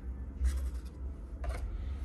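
Two brief rubbing or scraping sounds, one about half a second in and a sharper one near the end, over a steady low rumble: handling noise.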